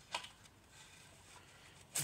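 A short click from handling a plastic Blu-ray case, just after the start, then faint room hiss.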